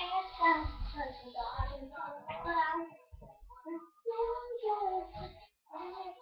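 A young girl singing, her voice dropping away briefly about three seconds in before she carries on.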